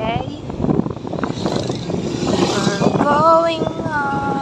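Street traffic with the engines of motorcycles and motorcycle tricycles running, and people's voices near the end.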